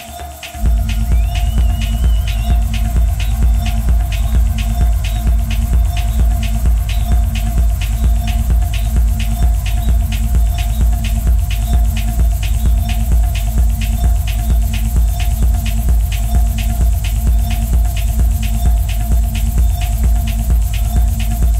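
Techno played live on synthesizers and drum machines. A heavy four-on-the-floor kick and bass come in about half a second in, over fast, steady hi-hat ticks and a held synth tone.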